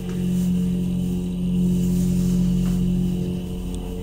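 Hydraulic elevator's EECO submersible pump motor running as the car rises, a steady low hum with a few overtones heard inside the cab.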